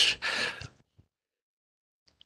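The breathy tail of a spoken phrase fades out within the first second, then there is dead silence for over a second.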